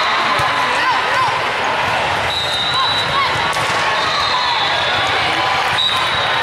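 Volleyball gym din: ball contacts and bounces, short sneaker squeaks on the court floor, and long high whistle blasts from nearby courts, over steady crowd chatter in a large echoing hall. A sharp ball hit comes near the end.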